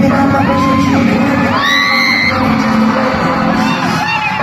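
K-pop dance track played loud through a concert hall's sound system, with fans' high screams gliding over it from about a second and a half in.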